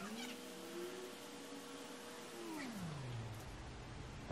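A faint, long, drawn-out cat meow: the call rises, holds one pitch for about two seconds, then slides down and fades.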